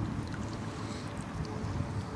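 Small waves lapping gently at a stony lake edge, with a low rumble of wind on the microphone.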